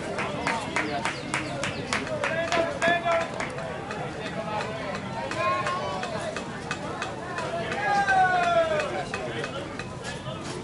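Outdoor voices of softball players and onlookers calling across the field. A quick run of sharp claps or clicks comes in the first few seconds, and a drawn-out falling shout comes about eight seconds in.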